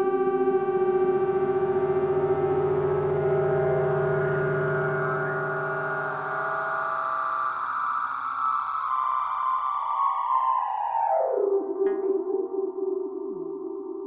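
Electronic, effects-processed drone music: layered sustained tones over a steady low note. Around ten seconds in, the upper tones slide down in pitch and fall away, leaving a wavering lower drone.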